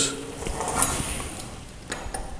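Metal pizza-cutter wheel rolling through a thin sheet of dough on a granite counter, a faint scraping rumble, with light clicks about a second in and near the end.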